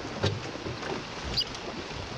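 Sea water splashing and running off a landing net as a fish is scooped out and lifted beside a boat, with a few light knocks.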